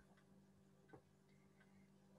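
Near silence: faint room tone with a low steady hum and a single faint click about a second in.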